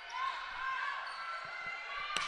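Gym crowd murmur with distant voices, and a few soft thuds of a volleyball being bounced on the hardwood court.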